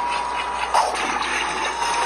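Video soundtrack from a VHS tape transfer playing through a tablet's speaker: a steady rushing hiss with a thin, steady high tone running through it, starting suddenly just before the trailer's music and voices.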